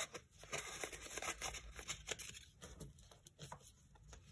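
Faint rustling and crinkling of paper banknotes and a paper envelope being handled, with scattered light ticks and taps.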